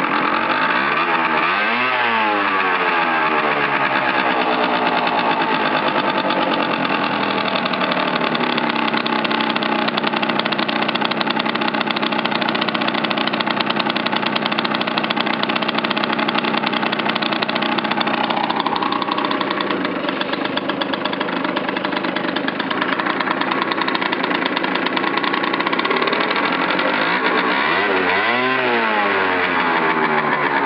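Yamaha Aerox 50cc two-stroke scooter engine running steadily, its pitch rising and falling briefly about two seconds in and again near the end. It is poor on the revs, which the owner suspects is a faulty automatic choke.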